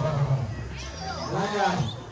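Voices in a room: short bits of vocalizing, with one rising-and-falling vocal sound about one and a half seconds in. No other distinct sound.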